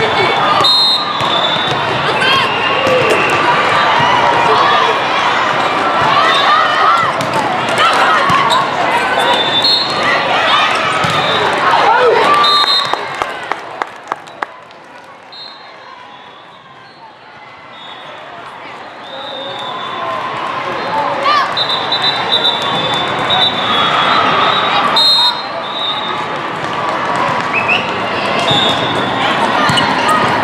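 Busy indoor volleyball tournament hall: many voices calling and chattering, with volleyballs being struck and bouncing on the courts and short high squeaks. The din eases for a few seconds in the middle, then builds again.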